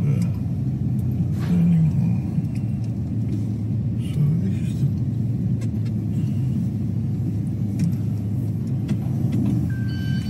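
Steady low rumble of a car's engine and tyre noise heard from inside the cabin while driving.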